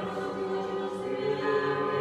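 A church choir singing unaccompanied chant in slow, held chords, in the manner of Orthodox church singing.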